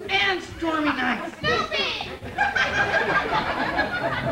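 A man performing a comic piece on stage, his voice pitched high and sliding up and down in exaggerated character voices.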